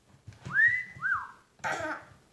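A person whistling two playful notes: a rising note that is held, then a short up-and-down one. A brief rough burst of sound follows near the end.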